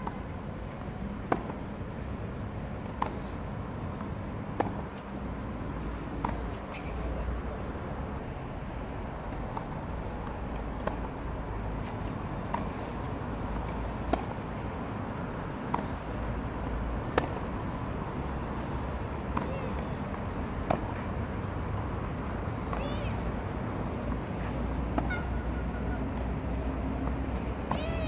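Tennis rally on a clay court: the ball is struck back and forth with sharp pops about every one and a half to two seconds, over a steady low rumble.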